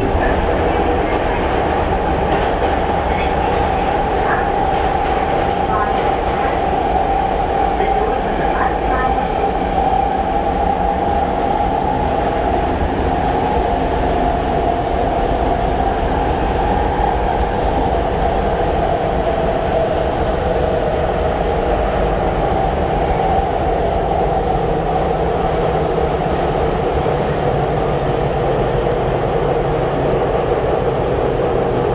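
Tokyo Metro 7000 series electric train with Hitachi IGBT-VVVF control running at speed, heard inside the carriage: a steady rumble of wheels on rail under a steady whine from the drive, its pitch sagging slightly in the second half, with a few faint clicks in the first part.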